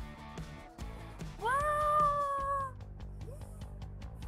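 Background music with one long, high meow laid over it about a second and a half in, rising at the start and then held for just over a second.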